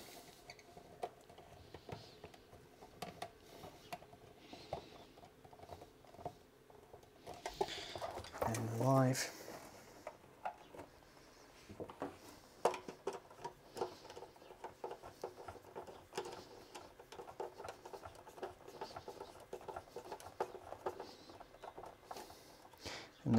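Faint hand work on a consumer unit: irregular small clicks, taps and scraping as stiff meter tails and a screwdriver are handled against the plastic enclosure and main switch. A short vocal sound about nine seconds in.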